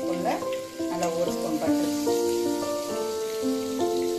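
Paneer frying in hot oil in a nonstick kadai, a steady sizzle, under background music of held melodic notes changing in steps.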